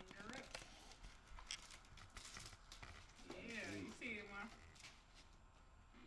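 Faint crinkling and rustling of packaging as a framed plaque is pulled out of its cardboard box and wrapping, in a run of quick crackles over the first three seconds. A brief soft voice sound comes in the middle.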